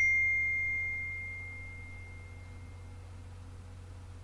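A single bright electronic ding, a phone's message notification, ringing out and fading over about two seconds, leaving a low steady hum.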